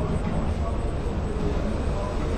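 Street ambience: a steady low rumble with faint, indistinct voices.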